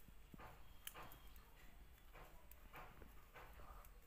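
Near silence with faint scratching and light clicks of metal knitting needles working wool yarn, recurring about every half second as stitches are knitted.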